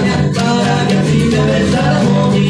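A tierra caliente string band playing live: a violin over two strummed acoustic guitars and a small drum, with a steady beat.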